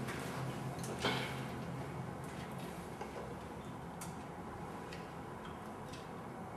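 A few scattered soft clicks and small handling noises over quiet room hiss, with a low hum that stops about a second in.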